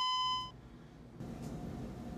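A flat, steady electronic bleep tone of the kind edited in to censor a word, cut off abruptly about half a second in. After a short quiet gap a faint, steady hum comes in.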